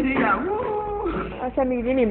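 Speech: voices talking and exclaiming, some drawn out at a high pitch.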